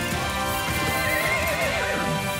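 A horse rearing and whinnying: one quavering neigh starts about a second in and lasts most of a second, over background music.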